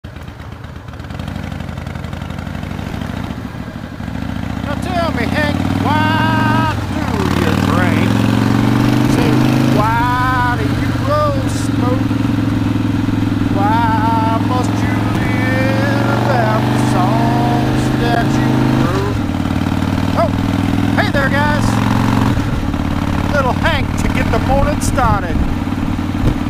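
2005 Harley-Davidson CVO Fat Boy's V-twin engine running under way, heard from the rider's seat. Its note holds steady in stretches and shifts in pitch several times as the bike changes speed, growing louder about four seconds in and again a few seconds later.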